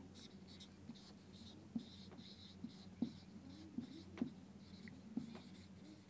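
Marker pen writing on a whiteboard, faint: scratchy strokes with short squeaks and a few light taps as the pen lifts and touches down.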